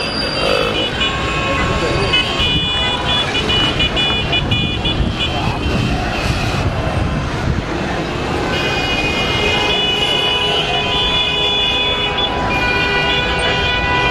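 Street traffic with vehicle horns sounding in long, sustained blasts, several at once, over a continuous bed of crowd voices and traffic noise.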